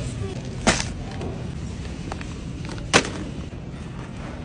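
Two sharp knocks about two seconds apart as grocery items are pulled off a store shelf and handled, over a low steady background hum.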